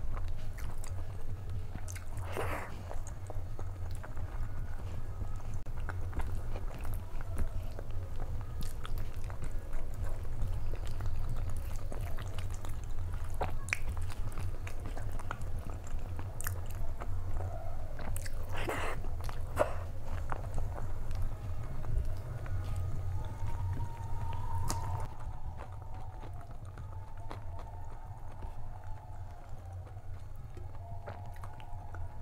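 Close-miked chewing and wet mouth sounds of a person eating rice and vegetable curries, with many small sharp clicks and two louder smacks, one early on and one past the middle.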